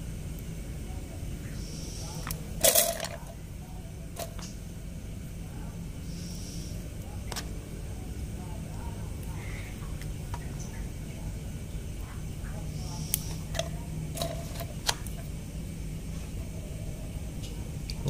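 Scattered light clicks and taps of bamboo skewers being handled as tempeh cubes are threaded onto them, the loudest a knock a little under three seconds in, over a steady low hum.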